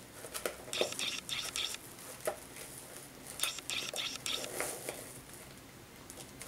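Ribbon and shiny gift-wrap paper rustling and crinkling as hands tie a bow on a wrapped box, in two clusters of short crackles with small clicks.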